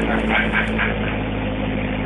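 2014 Corvette Stingray's 6.2-litre LT1 V8 idling steadily through its centre quad exhaust.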